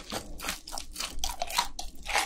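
Close-miked chewing of a mouthful of crispy fried chicken: a quick, irregular run of crunches.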